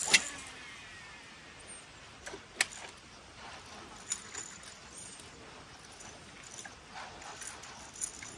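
A fishing cast: a sharp swish, then the reel's spool whirring and falling in pitch as line pays out. After that the reel is wound in, with a few sharp metallic clicks.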